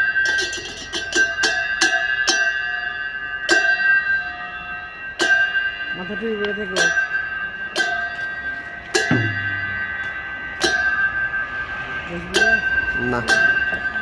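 Metal hand cymbals struck over and over at an uneven pace, each clash leaving a long shimmering ring, with a quick cluster of strikes at the start. Short voice calls sound between the clashes a few times.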